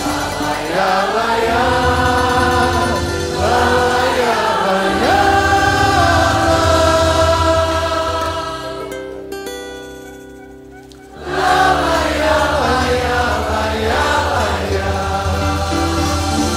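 Large choir singing a gospel song with a live band of cavaquinho, guitar and drums. About eight seconds in the music thins to a few held notes and fades, then choir and band come back in together suddenly about three seconds later.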